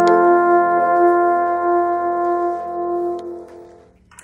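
Alphorn holding one long, steady note that dies away about three and a half seconds in.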